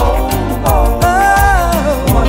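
R&B groove song with a drum beat and bass line under a lead melody that holds two long, slightly bending notes, the second starting about a second in.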